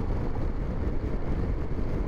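Steady rush of wind and road noise from a Yamaha FJR1300 motorcycle riding at speed, with the engine's hum underneath and no changes.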